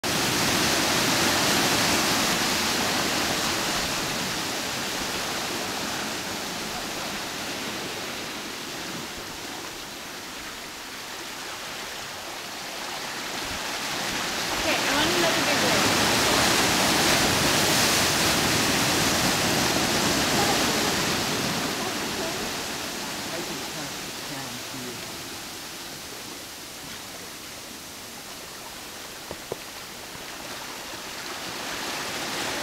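Sea waves surging into a narrow rocky gully, a continuous rush of churning surf. It swells loud at the start and again about halfway through, easing off in between and toward the end.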